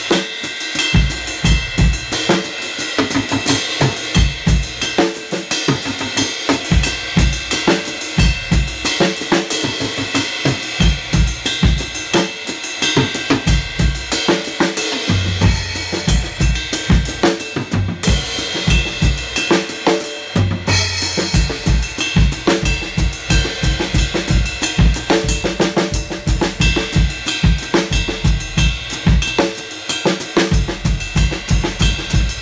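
Drum kit playing a timba breakdown groove: a güiro-style pattern on the ride cymbal over four-on-the-floor hi-hat, with kick drum and left-hand accents played freely around it. A low drum rings out briefly twice near the middle.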